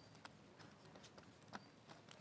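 Near silence with a few faint, short taps and clicks of a marker pen writing on a whiteboard.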